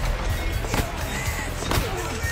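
Background music with about three sharp hits over it, the clearest about three-quarters of a second in and near the end: blows landing on a man's back.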